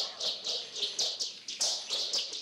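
Kung fu film soundtrack: a rapid series of short, high, falling swishes, about four a second, going with fast hand strikes.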